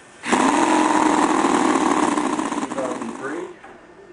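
A Conley quarter-scale 50cc four-stroke glow-plug V8 model engine running fast and steady. It cuts in suddenly about a quarter second in and fades out over the last second.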